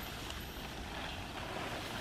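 Plastic tarp rustling and scraping on sand as it is hauled up by a rope, over a steady rushing noise.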